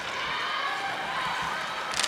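Ice hockey rink ambience: a steady hum of distant crowd voices and play on the ice, with one sharp knock at the very end, like a puck or stick hitting the boards.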